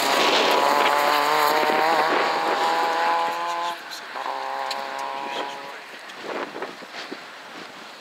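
Peugeot 106 rally car's four-cylinder engine at high revs as it drives past and away, with a short break in the note about four seconds in, like a gear change, before it pulls again for a second or so and fades.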